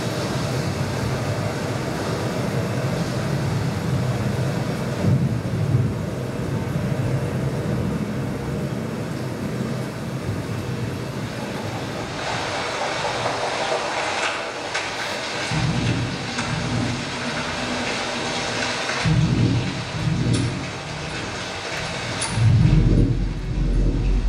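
Dance piece's soundtrack played over the hall speakers: a steady, rumbling, noisy soundscape like passing trains or traffic, with a few deep bass thuds in the second half, the heaviest near the end.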